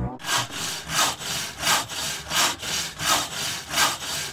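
Rhythmic scraping strokes, about three every two seconds, steady throughout.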